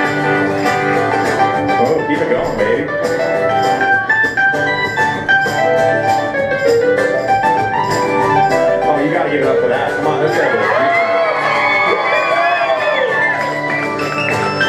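A live band playing: a man sings over keyboard, guitar and drums, with the singing most prominent and full of sliding, ornamented notes in the last few seconds.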